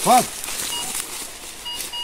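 Metal detector giving several short electronic beeps, a thin steady tone repeated in brief dashes, as the coil passes over a buried metal target.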